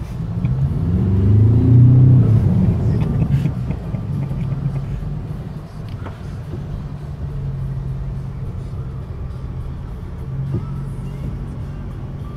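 Ford Ranger pickup's engine heard from inside the cab. It revs up in the first two seconds, rising in pitch, then settles into a steady drone as the truck drives through floodwater.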